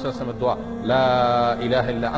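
A man's voice chanting Arabic dhikr in a slow, melodic recitation style. There is one long held note about a second in, set among shorter drawn-out syllables, over a steady low drone.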